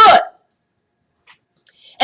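A woman's voice finishes a word, then a pause of near silence, broken only by two faint, brief sounds, the second just before she speaks again.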